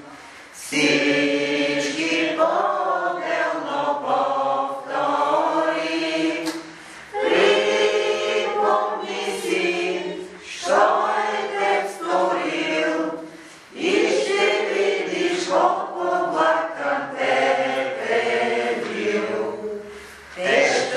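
A congregation singing a hymn together in long phrases, with short pauses between them.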